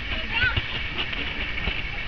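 Distant shouts and calls of players and spectators across an open football pitch, over a steady low rumble of wind on the microphone, with a few faint knocks.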